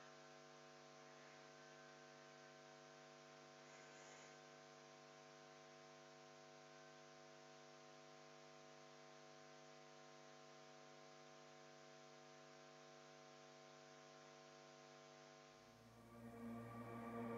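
Near silence: a faint, steady electrical mains hum made of several even tones over a low hiss.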